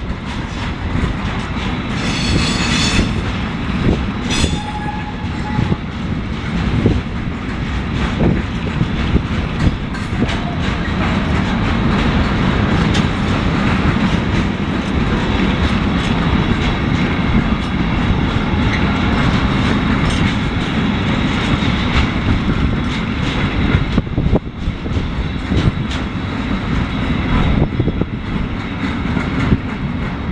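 Intermodal freight train's wagons rolling past: a steady heavy rumble with the clatter of wheels over rail joints and points, and a brief high squeal about two seconds in.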